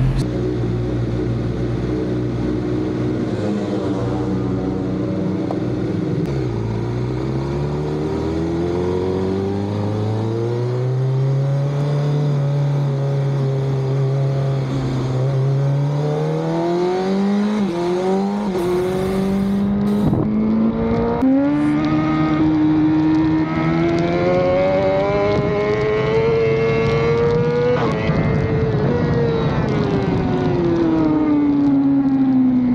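Honda racing motorcycle's engine, heard from on board: it idles, then pulls away with the revs climbing slowly, steps up in pitch a couple of times, rises again and drops at a gear change near the end.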